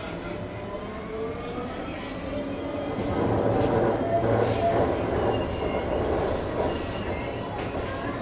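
Light rail tram running on its tracks, heard from inside the driver's cab: a rising whine in the first two seconds as it picks up speed, then the running noise grows louder about three seconds in.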